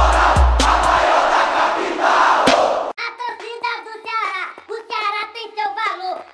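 A supporters' crowd chanting over heavy bass drum beats, roughly two a second, with the drum stopping about a second in. About three seconds in, the chant cuts off abruptly and a single high-pitched voice takes over.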